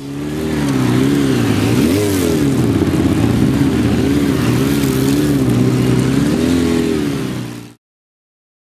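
Motorcycle engine running, its pitch wavering up and down over and over as the throttle is worked. The sound cuts off suddenly near the end.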